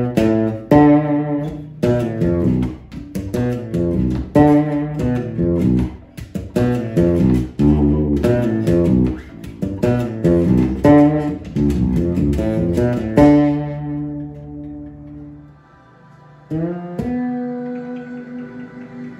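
Fretless six-string electric bass played with plucked notes: a quick run of single notes outlining a Locrian bassline on the B minor 7 flat 5 chord tones, ending about 13 seconds in on a held note that rings and fades. Near the end a new note is slid up into and held.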